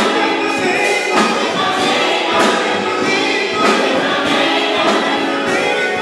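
Gospel praise team of several voices singing together in harmony, over live church-band accompaniment. Sharp percussion hits mark a steady beat.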